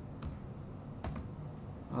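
Computer keyboard keys being typed: three separate clicks, one just after the start and two close together about a second in.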